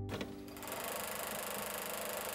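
Closing-logo sound effect: a steady, fast mechanical clatter with hiss that starts suddenly just as the plucked end-credit music stops.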